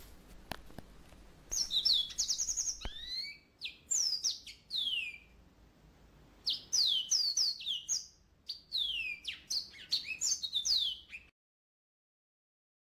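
Small songbird chirping in four quick runs of short, high, downward-sliding whistles, the sound cutting off abruptly near the end.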